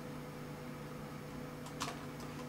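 Steady low hum from a desktop computer in a small room, with a single mouse click near the end.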